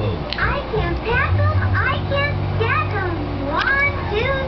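Children's cartoon soundtrack from a television: quick high chirps, like birdsong, repeating throughout, with a low steady hum starting about a second in and stopping shortly before the end.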